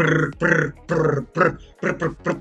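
A man's voice making a run of short wordless vocal noises, about two a second.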